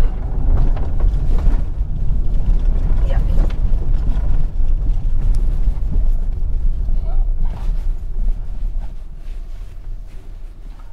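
In-cabin rumble of a 2023 Skoda Kodiaq SUV driving over a rough dirt track: a low, uneven noise from the tyres and suspension on the ground, with the engine beneath it. The rumble eases off near the end.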